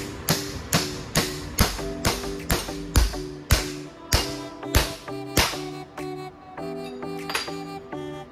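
Hammer blows on steel atop a differential pinion gear, driving a bearing onto the pinion: about a dozen sharp, ringing strikes a little over two a second, stopping about five and a half seconds in. Background music plays throughout.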